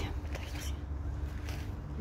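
Low, uneven outdoor background rumble with a faint steady hum and a few soft clicks.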